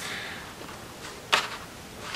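A page of a paper colouring book being turned by hand, with one short, crisp flap of paper a little past halfway.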